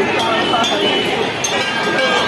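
Busy fair crowd: many overlapping voices chattering at once, with scattered small clinks.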